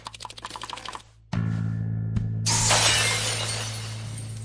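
Anime sound effects over a low musical drone: a quick run of sharp clicks, then a steady low drone sets in and a loud, noisy shattering burst breaks out about halfway through and slowly fades.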